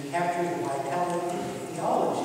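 A man's voice speaking, lecture-style.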